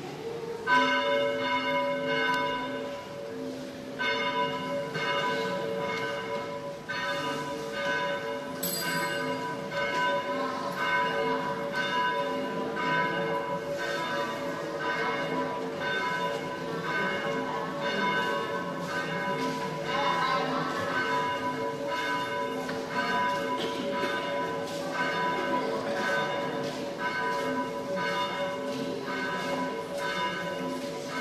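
A church bell tolling in repeated single strokes, each ringing on. The strokes are a few seconds apart at first, then come steadily about once a second.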